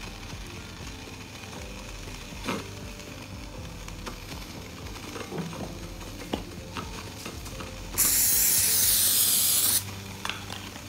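Aerosol cooking spray sprayed onto a hotpot's grill plate: one steady hiss of about two seconds near the end, starting and stopping abruptly. Before it there are only a few faint taps and clicks.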